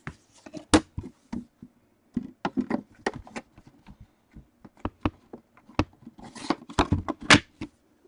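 Trading-card boxes being handled and set down on a tabletop: an irregular string of knocks, taps and scrapes, busiest and loudest a little before the end.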